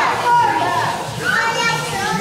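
Young children's voices chattering and calling out at once, several high-pitched voices overlapping.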